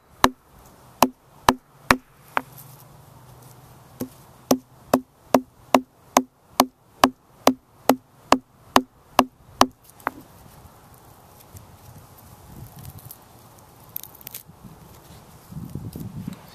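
A round stone pounding deer-leg sinew laid on another stone, separating and flattening its fibres: sharp stone knocks about two a second, with a short pause about two seconds in. The knocks stop about ten seconds in, and only faint handling noise follows.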